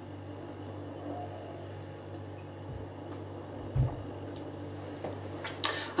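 A man quietly drinking beer from a glass, with one soft low gulp a little under four seconds in, over a steady low hum.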